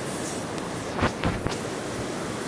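Steady wash of shallow shore waves with wind noise on the microphone, broken by a few brief low thumps about a second in.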